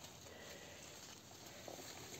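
Near silence: only faint, steady background noise.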